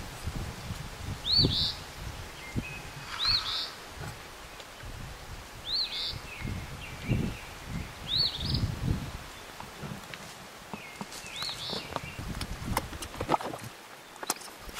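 A small bird repeating a short, arched, high call five times, every two to three seconds, each followed by a brief lower note. Low rustling and a few bumps sound underneath, with some sharp clicks near the end.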